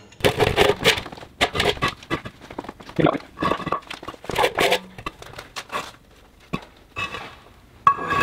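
A well pressure tank scraping across a concrete floor as it is slid over, with knocks of concrete blocks being shifted under it. The scrapes and knocks come thick for about five seconds, then it goes quieter with one sharp click.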